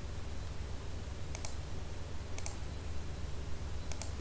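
Computer mouse clicks, twice about a second apart in the middle and once more at the end, over a steady low hum.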